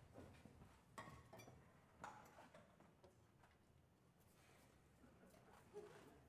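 Near silence: room tone with a few faint clicks and knocks, one about a second in, one at two seconds and one near the end.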